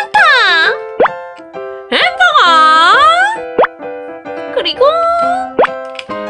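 Cheerful children's background music with held notes, overlaid by playful sliding-pitch cartoon sounds: a falling swoop at the start, a long dip-and-rise swoop about two seconds in, and rising swoops near the end.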